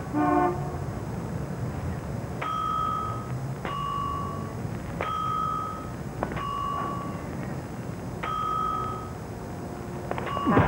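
Street traffic: a steady low rumble with five horn toots, the first about two seconds in. The toots alternate between a higher and a lower pitch, about one every second and a half, each held under a second.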